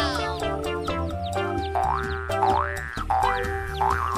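Upbeat children's-style background music with a steady bass line, with three rising pitch slides like cartoon boing effects in the second half.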